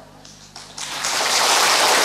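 Applause from a large seated audience, beginning about half a second in after a brief hush and building to a steady level.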